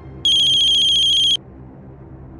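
Mobile phone ringing: one burst, about a second long, of a high, rapidly pulsing electronic ring, starting a quarter of a second in and cutting off suddenly.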